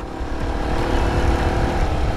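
Motorcycle engine running steadily while riding at cruising speed, mixed with wind rushing over the microphone.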